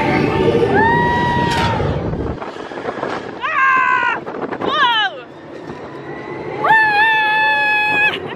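A woman's high screams on a fast thrill ride: four cries, the last one long and held. Under the first two seconds runs a loud low rumble of the moving ride car, which then drops away.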